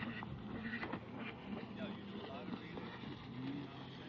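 Steady low engine hum of a motorized watercraft on a lake, with faint voices over it.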